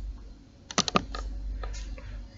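Keys tapped on a laptop keyboard: a quick run of several clicks about a second in, then two more single taps.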